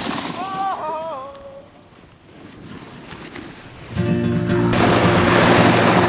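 A short yell that falls in pitch over about a second, over outdoor hiss. About four seconds in, a guitar song starts abruptly and continues.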